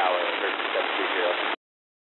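A short air traffic control radio transmission through a scanner: a voice, mostly unintelligible under heavy hiss, that cuts off abruptly about a second and a half in as the squelch closes.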